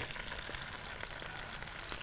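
Low, steady sizzle of hot oil in a pot of fried onions and carrots as dry rice is tipped in, with a few faint ticks.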